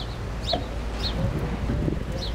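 Birds chirping: three short, high calls that fall in pitch, about half a second apart, over a steady low rumble.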